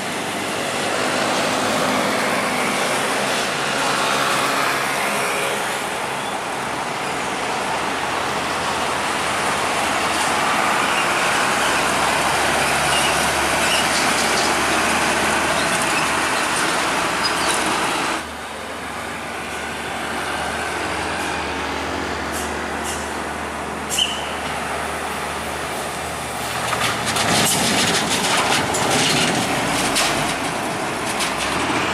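Heavy diesel trucks and other traffic driving past on a highway: engines running and tyre noise, louder as each truck goes by. The sound drops suddenly about two-thirds through, and a brief sharp sound follows a few seconds later.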